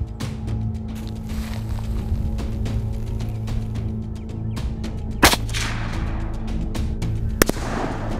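Two shots from a Marlin lever-action .30-30 rifle, about two seconds apart, the first about five seconds in and the louder, with an echo trailing after it. Background music with a steady beat plays throughout.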